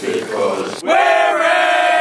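A group of young men chanting in unison, loud, then rising into one long held shout about a second in.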